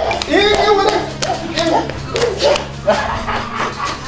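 People's voices exclaiming and talking with a scatter of sharp claps or knocks, over a steady low electrical hum.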